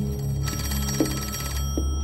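A telephone bell ringing, one burst of about a second, over a low sustained music drone.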